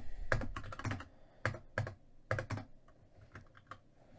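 Computer keyboard typing: a quick run of keystrokes in the first second, then single key presses spaced a few tenths of a second apart.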